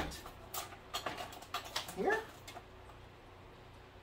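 A few light clicks and rustles of a small cable bundle being picked up and handled, then a drawn-out spoken "here" about halfway through.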